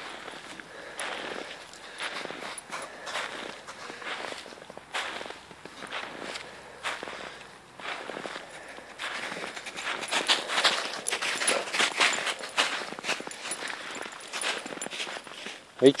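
Footsteps crunching through snow at about two steps a second, louder and busier a little past the middle.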